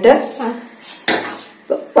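Dry horse gram seeds rattling against a stainless steel bowl as a hand stirs through them and the bowl is moved, with about three sharper rattles: near the start, about a second in, and near the end.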